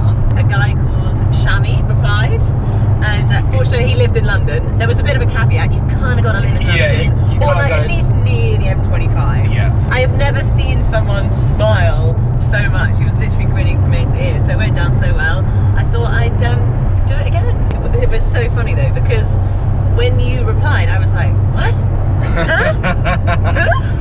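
Conversation and laughter inside the cabin of a Mercedes-AMG GT S on the move, over the steady low drone of its engine and tyres at cruising speed.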